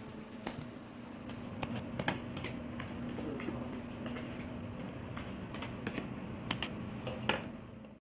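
Scattered light clicks and taps over a faint steady low hum that stops a little past halfway.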